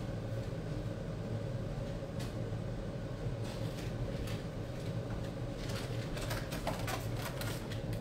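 Steady low hum of room noise, with scattered faint clicks and short rustles, most of them in the second half.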